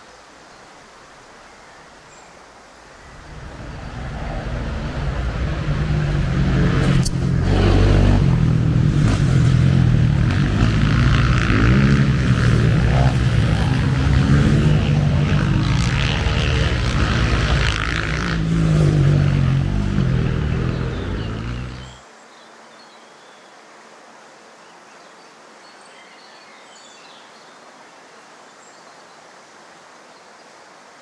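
Racing quad bike engines on a dirt track: the sound builds from about three seconds in, runs loud and uneven for some fifteen seconds, then cuts off suddenly. Faint outdoor ambience comes before and after.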